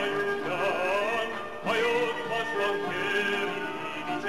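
A man singing an Armenian folk song over instrumental accompaniment, his voice holding long wavering notes with ornamented turns. He starts a new phrase about one and a half seconds in.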